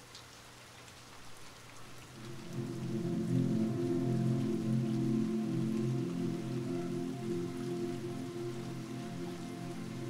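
Meditation background track of steady rain sound, joined about two seconds in by a sustained, unchanging music chord that swells up and holds.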